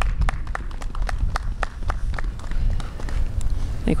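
A small group of people clapping: sparse, uneven hand claps that thin out and stop near the end, over a low wind rumble on the microphone.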